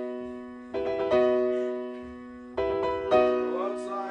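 Slow piano music: chords struck in pairs about every two seconds, each left to ring and fade.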